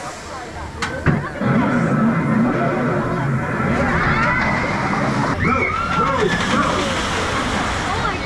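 Rita's hydraulic launch sequence: the coaster train launching from standstill under a steady rushing noise, with riders' voices and screams.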